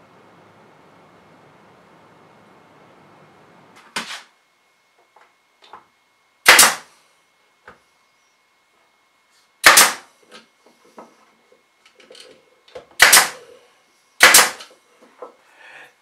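Bostitch pneumatic nailer firing nails into a thin wooden box back: five sharp shots a few seconds apart, with light clicks of handling between them.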